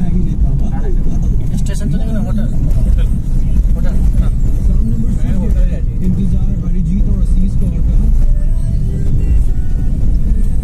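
Steady low rumble of a car's engine and road noise heard inside the cabin while driving, with a person's voice, or vocal music, running over it.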